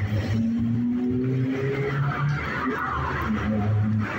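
A car engine running close by on a street, its tone rising slightly, with road noise around it.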